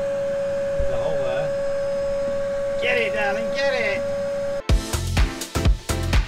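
Canister vacuum cleaner running with a steady whine, a voice briefly over it. About four and a half seconds in it cuts off suddenly and music with a heavy beat takes over.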